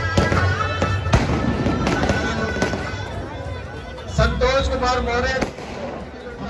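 Firecrackers going off in a quick string of sharp cracks over music, the sharpest crack about a second in. From about four seconds in, a voice rises over the music.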